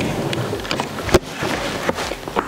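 Rustling and light clicks of makeup items being handled and picked through on a table, with one sharper click about a second in.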